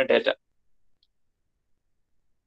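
A man's voice finishing one word, then dead silence with only a faint tick about a second in.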